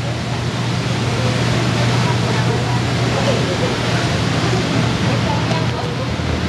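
Steady hum and rush of air from the electric blower that keeps the inflatable slide inflated, with children's voices faint behind it.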